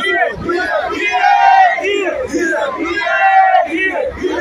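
A man shouting long, drawn-out rallying calls to a crowd, three held cries about a second and a half apart, with crowd noise around them.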